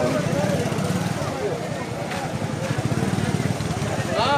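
A motorcycle engine running with a low, even pulse, with people talking around it.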